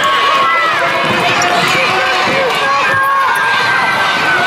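Many children's voices shouting and cheering at once in a large indoor sports hall, with running footsteps on the wooden floor underneath.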